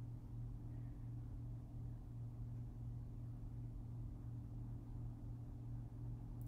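Steady low hum with faint background hiss: quiet room tone.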